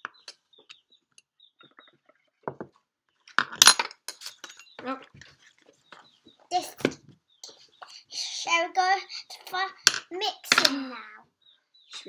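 Small clinks and taps of straws and paint pots on a table, with a young child's voice over the second half.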